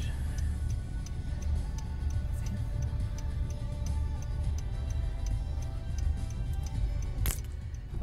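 Car turn-signal indicator ticking steadily, about three clicks a second, over the low rumble of the car and faint music. A single sharper click comes near the end.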